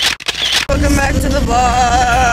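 A few sharp clicks with short chirps, then, about two-thirds of a second in, an abrupt change to a voice holding one long, slightly wavering note.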